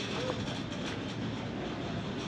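Steady mechanical rumble and outdoor noise at an even level, with faint voices in the background.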